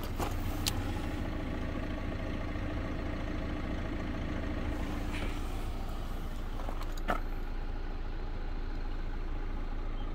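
Hyundai Avante's engine idling steadily, with a few faint clicks.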